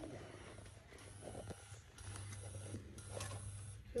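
Faint handling noises while bacon is fetched and laid out at a frying pan: a few soft clicks and rustles over a low steady hum.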